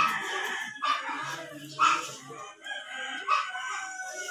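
Animal calls: short sharp calls about once a second, then a long held call of about two seconds that falls slightly in pitch near the end.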